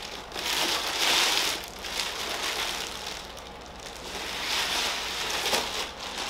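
Clear plastic wrapping crinkling and rustling in several bursts as it is pulled off a tall arched mirror.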